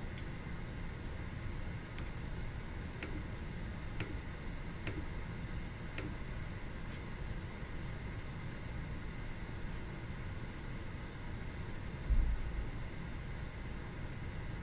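Faint, scattered clicks at a computer desk, about one a second for the first seven seconds, over a steady low room hum. A single low thump about twelve seconds in.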